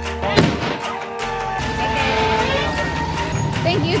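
Background music with a single sharp bang about half a second in, then voices under the music in the second half.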